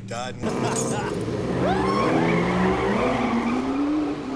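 McLaren convertible sports car pulling away and accelerating, its engine note rising steadily, with some tyre squeal as it sets off.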